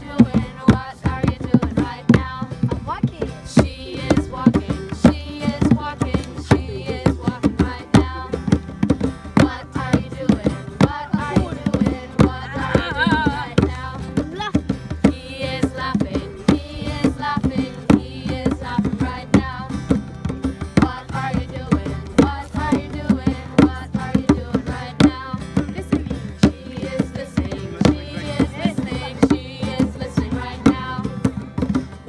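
Djembe hand drums beaten in a steady rhythm with a strummed acoustic guitar, and voices singing a children's song over them.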